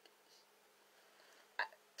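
A quiet pause in a small room, broken once, about one and a half seconds in, by a short sharp vocal sound from a woman, a catch of breath.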